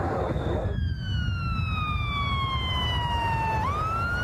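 Emergency vehicle siren wailing: one long, slow downward sweep, then swinging back up shortly before the end, over a steady low rumble.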